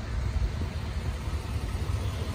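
Vehicle engine idling: a steady low rumble under faint outdoor background noise.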